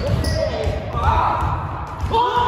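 Basketball dribbled on a gym's wooden floor during a drive to the basket, with voices calling out from about halfway through.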